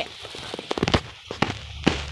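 A quick irregular run of sharp crackles and knocks, thickest and loudest about a second in.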